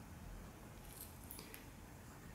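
Faint scratching of a fountain pen nib on paper as handwriting is written, with a few brief sharp ticks of the nib about a second in.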